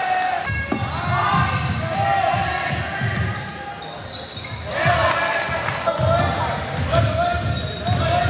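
A basketball bouncing on an indoor court during a game, amid players' calls, with a brief lull a little before halfway.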